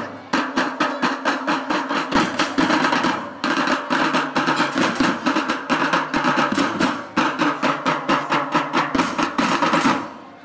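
A children's marching drum band playing a fast rhythmic cadence on snare, bass and tenor drums, with two short breaks in the beat, then stopping abruptly.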